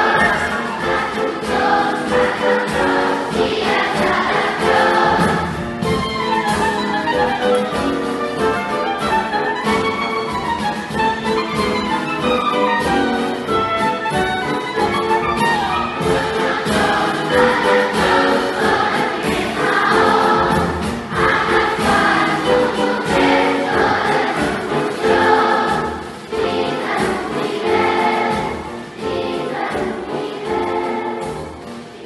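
A large massed children's choir singing live with an instrumental ensemble that includes piano, heard in a concert hall.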